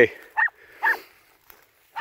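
Hunting dog giving two short, high barks about half a second apart while baying at a wild boar.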